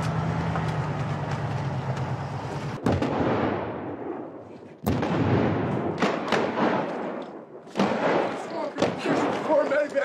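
Steady low hum for the first few seconds, then staged special-effects explosions on a film set: a sudden loud blast about five seconds in, followed by a run of sharp cracks and thuds, with shouting near the end.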